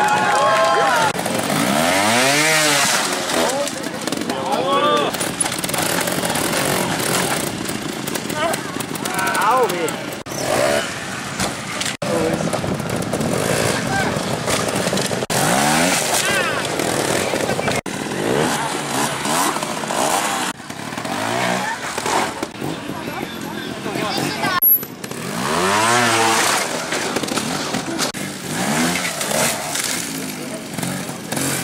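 Trial motorcycle engines revved in short bursts as the bikes climb and hop over obstacles, each rev swelling up and falling away, several times over.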